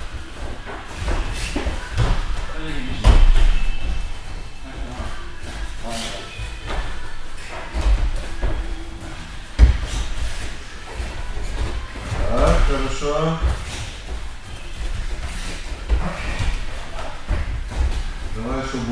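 Heavy thuds of bodies and feet landing on padded mats as two grapplers practise trips and throws, the loudest about three seconds in and another sharp one near the tenth second, with voices talking around them.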